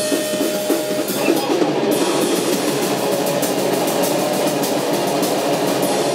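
Live rock band playing loud: electric guitar and a drum kit with cymbals, in one dense wash of sound.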